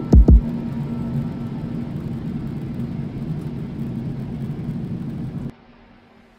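Steady rumble of a jet airliner's cabin in flight, opening with two deep thumps. The rumble cuts off abruptly near the end.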